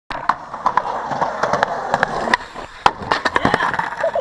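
Skateboard wheels rolling on rough asphalt, with a string of sharp clacks and knocks from the board, the loudest nearly three seconds in, as the rider goes down and slams onto the pavement.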